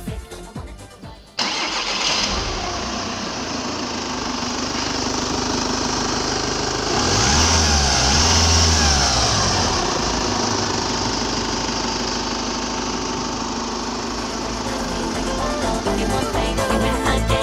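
Volkswagen Passat 2.0 TDI common-rail four-cylinder turbodiesel, freshly rebuilt, running. It cuts in suddenly about a second and a half in and idles, is revved up and back down around the middle, then settles to a steady idle.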